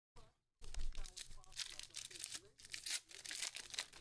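A foil trading-card pack torn open and its wrapper crinkled, an irregular rustling that starts about half a second in.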